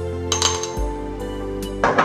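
Background music, with sharp metallic clinks of a metal spoon against a stainless steel mixing bowl about half a second in and again, loudest, just before the end.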